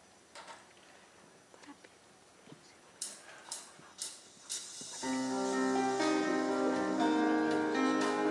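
A few faint sharp clicks about half a second apart, then, about five seconds in, a Roland keyboard synthesizer starts playing, much louder: held chord tones with plucked-string notes ringing over them.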